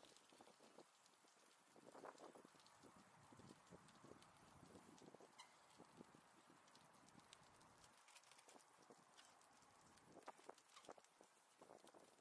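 Very faint irregular ticking and rattling of bicycles rolling along a paved path, with a few louder clicks toward the end as the riders slow down.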